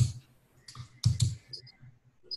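Clicking on a computer close to the microphone: several short, irregular clicks.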